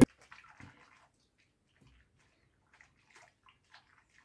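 Faint, intermittent splashing of water in a bathroom sink as small hands wash a plastic baby doll.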